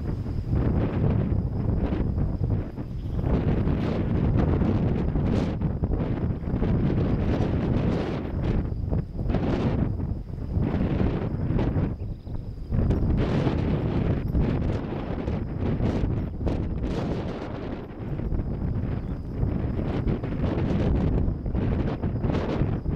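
Wind buffeting the camera microphone in uneven gusts, a loud low rumble that swells and drops every few seconds.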